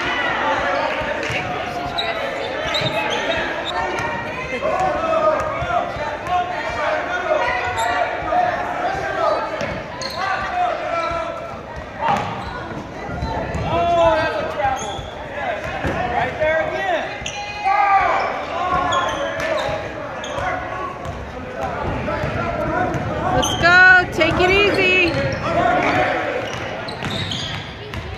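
A basketball bouncing on the hardwood gym floor during play, with many short knocks, under the voices of players and spectators, echoing in the large gym.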